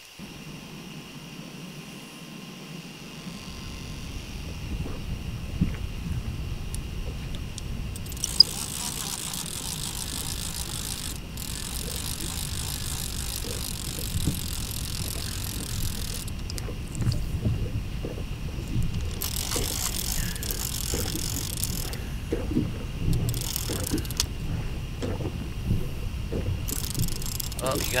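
Baitcasting fishing reel ratcheting while a hooked fish is fought on the rod, over a steady low rumble. Several bursts of high hiss come through as line is worked.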